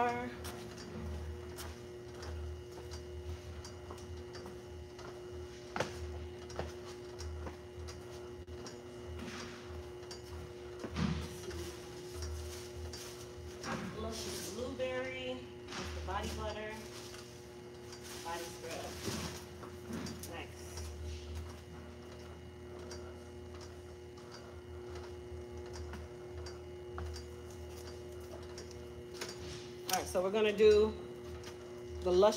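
Faint, unintelligible voices in the background over a steady electrical hum, with a few sharp knocks.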